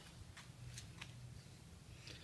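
A few faint, short clicks from a small plaster of Paris mould being handled and knocked against a concrete floor, over a low background hum.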